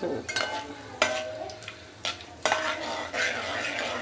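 Whole spices sizzling in hot oil in a cooking pot while a spatula stirs them, knocking against the pot four times with a short metallic ring.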